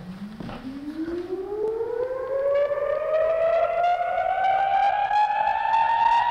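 Air-raid siren winding up: one long tone rising slowly in pitch and growing steadily louder.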